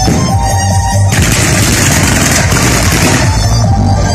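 Electronic dance music with a steady bass beat, with a firework display going off over it: about a second in, a dense burst of crackling and bangs lasts about two seconds.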